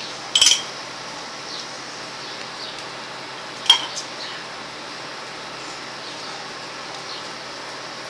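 A short clatter of a spoon against a cup just after the start, then a single sharp clink about three and a half seconds in as a glass is set down on a ledge, over a steady hiss.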